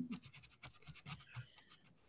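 Faint scratching and rustling noises with scattered small clicks, and a soft laugh trailing off at the very start.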